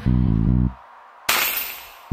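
Electric bass guitar playing a short riff of three low notes that stops about two-thirds of a second in, followed just past halfway by a single sharp drum-kit hit with a ringing crash cymbal that fades away.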